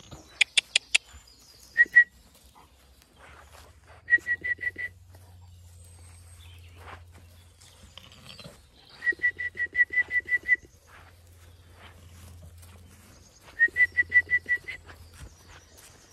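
Mouth calls to coax a ewe and lamb along: four quick tongue clicks, then runs of rapid high squeaks, about eight a second, repeated three times.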